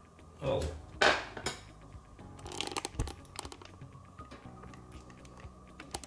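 A man's short exclamation, 'Oh', then a few light clicks and taps of handling.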